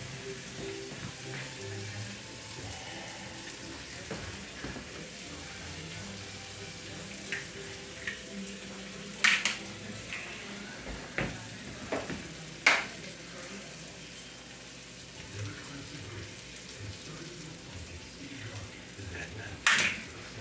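Shrimp sizzling steadily in a frying pan on a gas stove. Several sharp clicks come over it, as eggs are taken from a clear plastic egg tray.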